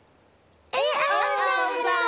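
Several high, childlike character voices start together about two-thirds of a second in, rising into one long, held note sung at several pitches at once.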